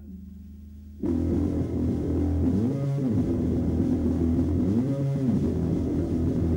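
Live rock band: a low held amplifier drone, then about a second in the band comes in loud with distorted electric guitar and bass playing a riff whose sliding note comes round about every two seconds.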